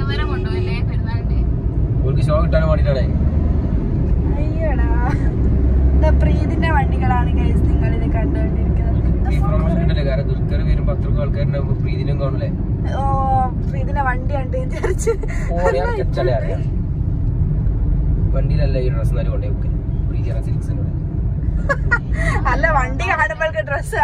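Steady low engine and road rumble inside a moving car's cabin, with people talking on and off over it.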